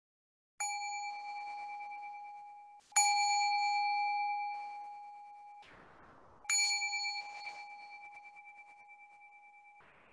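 Meditation bell struck three times, each strike ringing out with a long, slowly fading tone, marking the end of a sitting period. A faint rustle comes just before the third strike.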